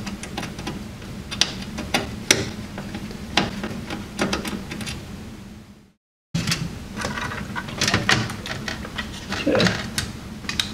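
Screwdriver clicking and tapping against motherboard screws and the metal of a PC case, with irregular sharp clicks. The sound drops out completely for a moment about six seconds in.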